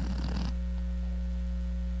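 Steady low electrical hum on the audio line, a mains-hum buzz with no voices over it.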